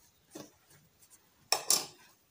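Handling noise of cloth: a faint rustle, then one brief, louder rustle about a second and a half in as the fabric is pushed and folded by hand.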